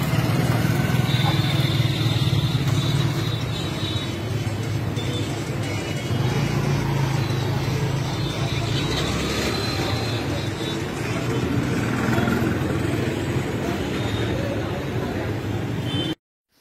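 Busy market street ambience: motorcycles and other light vehicles running past, with crowd voices, a steady unbroken din.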